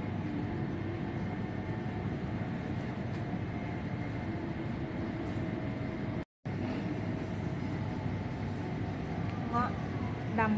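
Steady background hum of a shop, with faint indistinct voices. The sound cuts out briefly about six seconds in, and a short voice is heard near the end.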